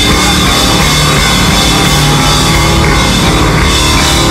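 Live psychedelic blues-rock band playing an instrumental passage: electric guitars and drum kit, loud and dense throughout, with no vocals.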